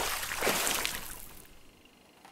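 Paper pages of a hardback picture book rustling as a hand handles and begins to turn a page, fading out after about a second and a half.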